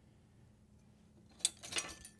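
A few ice cubes tipped from a small bowl into a stainless steel mixing bowl, a quick clatter of clinks about a second and a half in.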